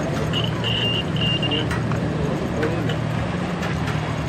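Indistinct voices over a steady low hum, with three short high-pitched tones in quick succession during the first second and a half.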